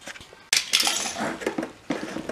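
Hard plastic toy truck clattering and clinking as a toddler handles it, starting suddenly about half a second in.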